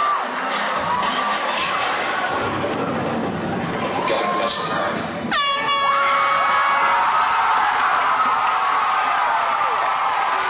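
Loud dance-mix music in a hall with the audience cheering and whooping; about five seconds in, a sudden air-horn blast cuts in and holds for about a second.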